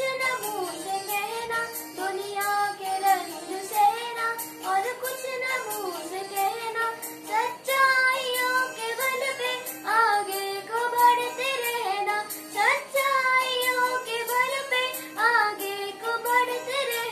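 A boy singing a song solo, a melody with held notes that rise and fall.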